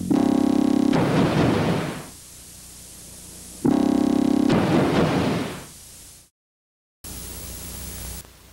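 Two loud synthesizer stings from a horror-film score, one at the start and one a little past halfway. Each is a steady chord that fades into a hissing wash over about two seconds. The sound then cuts out completely for under a second and comes back as steady tape hiss.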